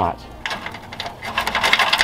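Links of a small rusted chain clinking against each other as a hand works at a knot tied in it: a run of light metallic clicks, busier near the end.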